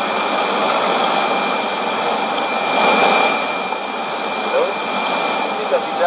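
Shortwave receiver tuned to a weak AM station at 11770 kHz: a steady hiss of static with faint steady whistle tones laid over it. Traces of the broadcast voice surface faintly near the end.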